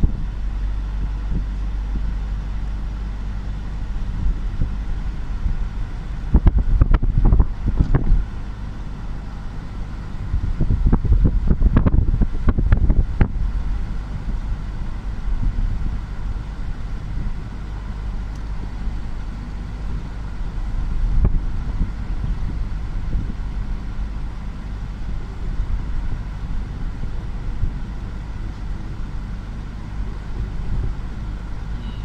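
Steady engine and road rumble of a moving car, heard from inside the vehicle, with two louder, rougher spells, one about six seconds in and one about eleven seconds in.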